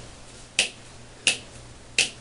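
A series of sharp, snapping clicks made by a person, in a slow even rhythm about 0.7 s apart.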